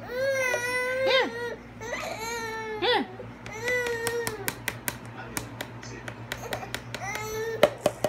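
Baby crying: three long wailing cries over the first four and a half seconds, then a shorter cry near the end. Between them comes a run of sharp clicks or taps.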